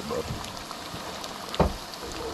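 Battered fish nuggets sizzling in hot oil in a pot, a steady crackling hiss, with a single sharp knock about one and a half seconds in.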